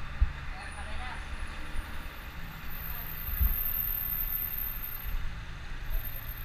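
Street traffic rumble with occasional low bumps and knocks, and faint voices about a second in. A thin, faint high whine sounds through the middle.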